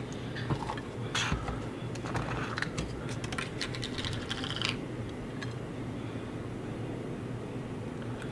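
Light clicks and scratches of hands working over a plate of raw whole trout and small seasoning containers, in a quick irregular run that stops about five seconds in. A steady low hum runs underneath.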